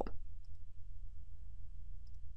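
Quiet room tone: a low steady hum with a couple of faint computer mouse clicks.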